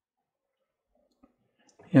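Near silence with a few faint clicks in the second half, then a man's voice starts near the end.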